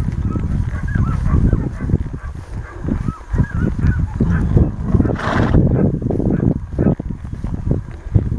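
Footsteps swishing through tall prairie grass, with handling and wind noise on the microphone of a camera carried at a walk. A series of faint short calls comes through in the first few seconds, and there is a brief louder rush about five seconds in.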